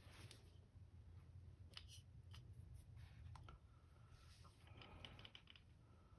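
Near silence: faint scattered small clicks and scrapes from a lure being handled in a metal helping-hands clamp stand with alligator clips, over a low steady hum.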